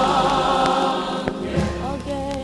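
Gospel choir holding a long chord with vibrato, which drops away about a second and a half in as a new sustained note comes in. Vinyl record surface clicks are scattered throughout.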